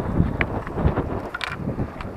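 Strong wind buffeting the camera microphone, a low rumbling roar, with a few brief clicks and knocks of handling about half a second and one and a half seconds in.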